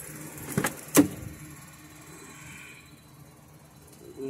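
Mercury Grand Marquis door being opened: two sharp clicks of the handle and latch about a second in, the second louder.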